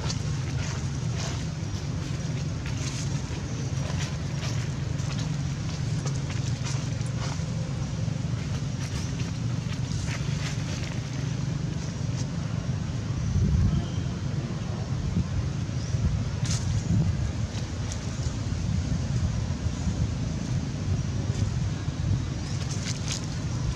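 Steady low outdoor rumble, with faint brief rustles and clicks scattered over it and a short louder low swell a little past the middle.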